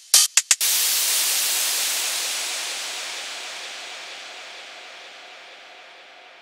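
Ending of a future house track: a few quick stuttered chops in the first half second, then a wash of white noise that fades away slowly.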